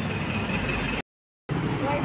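Steady traffic noise beside a busy highway, broken about a second in by a half-second gap of complete silence where the recording cuts.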